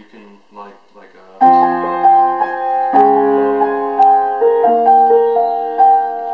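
Upright piano played with both hands: loud sustained chords struck in a steady rhythm, starting about a second and a half in after a brief spoken word.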